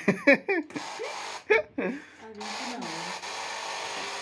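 Voices and laughter, then about two and a half seconds in a small electric blower switches on and runs with a steady hiss, blowing on freshly applied henna on a hand.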